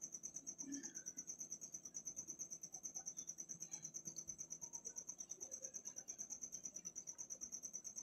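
Faint background noise: a steady high-pitched whine over a low hum, pulsing evenly about ten times a second.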